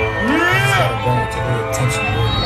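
Loud live music played over a concert PA: a pulsing bass line with sliding, swooping tones over it, as a DJ builds into the next track. Crowd voices are mixed in.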